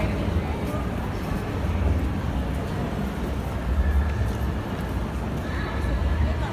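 Busy train-station concourse ambience: background voices of passers-by over a steady low rumble.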